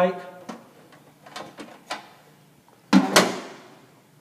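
Handling noise inside a sheet-metal electrical enclosure as heavy copper wires are worked by hand: a few faint clicks, then one loud, sharp metallic clatter about three seconds in.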